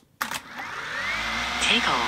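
DJI Mini 2 drone's propellers spinning up for take-off: a steady whirring hiss that starts about a quarter second in and grows louder as the drone lifts off.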